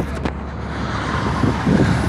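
Steady low rumble of a vehicle engine running, with a few sharp knocks from the phone being handled near the start.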